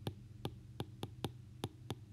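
Stylus tip tapping on a tablet screen during handwriting: a quick, irregular run of light clicks, about eight in two seconds.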